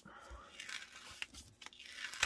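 A photo being peeled up off cardstock, held down by strong tape adhesive, making a faint tearing rustle with a couple of small clicks.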